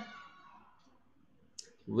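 A man's voice trailing off at the end of a word, then a quiet room. A single faint short click comes shortly before his speech starts again near the end.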